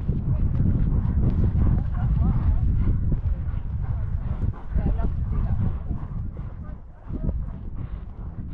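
Wind rumbling on a rider-mounted camera's microphone over the muffled hoofbeats of a horse moving across a grass field; the rumble eases off about six seconds in.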